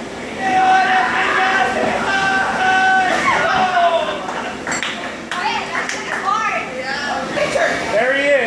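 People's voices calling out and talking, with a few long drawn-out calls in the first three seconds and shorter shouts and chatter after about five seconds.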